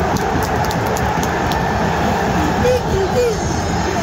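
A large football crowd in a packed supporters' stand, roaring and shouting as one steady wall of noise, with a few individual voices rising above it.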